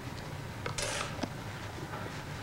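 Small clinks and taps of toiletry bottles and jars being picked up and set down on a bathroom vanity counter, with a brief hiss about a second in.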